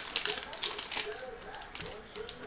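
Foil trading-card pack wrapper crinkling and crackling as it is torn open and handled, heard as a quick run of small clicks.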